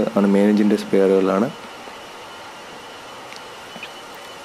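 Steady, even background noise of a container ship's engine-room machinery, heard alone after a man's voice in the first second and a half.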